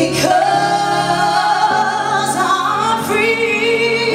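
A woman singing a slow gospel song live into a microphone, holding long notes with vibrato.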